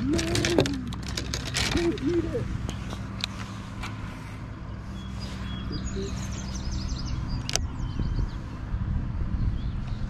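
Low steady hum of a boat motor, with a man's short vocal groans in the first two seconds, a sharp click about seven and a half seconds in, and faint bird chirps.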